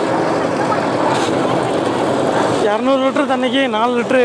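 A steady noisy background, then about two and a half seconds in a person's voice comes in, with long wavering tones.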